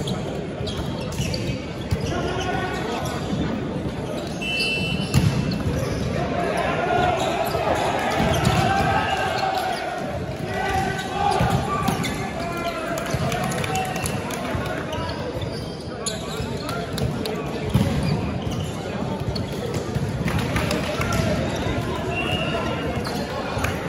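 Volleyball play on a wooden sports-hall court: sharp thumps of the ball being hit, blocked and bounced on the floor, amid players' shouts and spectators chatting in a large, echoing hall.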